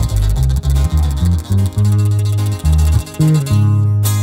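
Instrumental break of a live corrido: acoustic guitars, one a twelve-string, strumming and picking a melody over a bass guitar, with no singing.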